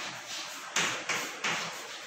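Chalk writing on a blackboard: three short, sharp taps and scrapes of the chalk stick against the board about a second apart.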